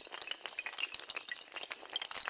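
Glass-shattering sound effect of an animated logo intro: a dense, continuous run of small high clinks and tinkles, like scattering glass shards.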